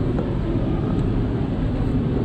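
Caterpillar D6 dozer's diesel engine running steadily, a low, even sound.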